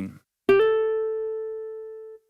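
Roland FA-08 workstation's SuperNATURAL acoustic guitar sound: a single plucked note about half a second in that glides almost at once up to a slightly higher note, which rings on and fades slowly. The patch turns the two quickly played keys into a guitarist's hammer-on.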